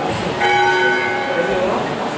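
A bell struck once about half a second in, its clear ringing tone lasting about a second before fading, over a murmur of voices.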